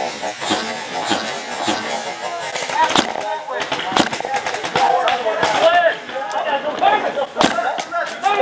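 Paintball markers firing scattered single shots, sharp pops about every half second to a second, with players shouting in the background.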